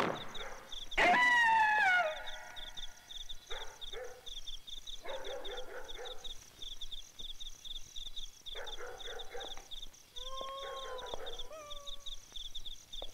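Dogs howling: a loud howl falling in pitch about a second in, then broken, wavering howls, and a steadier pair of howls near the end, over steady rapid chirping of crickets.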